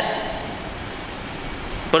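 A pause in a man's speech in a large room: his last word's echo dies away at the start, leaving a steady background hiss of room noise until he speaks again at the very end.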